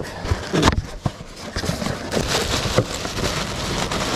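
Tissue paper crinkling and rustling as an ornament is unwrapped from a small cardboard box, with light knocks of cardboard being handled. The crackling runs on densely through the second half.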